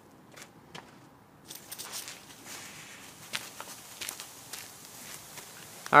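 Faint hiss of water spraying from a Rain Bird rotor sprinkler head, starting about a second and a half in, with scattered light ticks.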